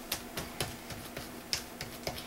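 Light, irregular taps and clicks, several a second, from a plastic stencil and paper being worked on an art journal page.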